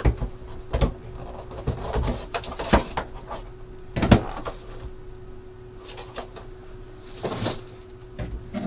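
Small cardboard trading-card box being handled and opened: scattered taps, scrapes and rustles of cardboard, with the loudest knock about four seconds in and a rustling slide near the end as the cased card comes out. A faint steady hum runs underneath.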